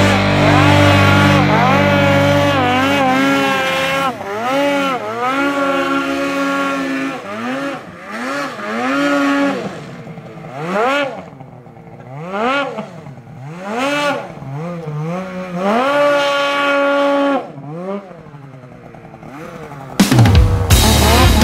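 Ski-Doo snowmobile engine held at steady revs for a few seconds, then revved up and down again and again, each blip of the throttle a rising and falling whine, as the sled is worked through deep powder.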